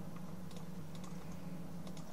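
A handful of light, irregular clicks from a computer keyboard over a steady low hum.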